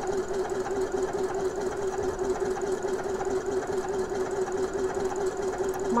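Elna eXperience 450 computerised sewing machine stitching decorative stitch 22 at a steady speed: an even motor hum with a fast, regular chatter of needle strokes.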